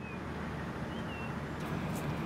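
Outdoor ambience: a steady low rumble of road traffic, with a faint short high chirp about a second in.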